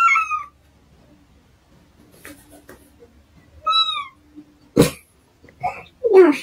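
Domestic cat meowing twice: a short call at the start and a second call that falls in pitch about four seconds in. A single sharp thump comes near five seconds.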